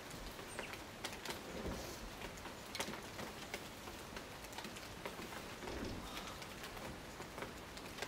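Rain falling on rainforest foliage: a steady hiss scattered with many small drop ticks. A low bird call sounds twice, about two and six seconds in.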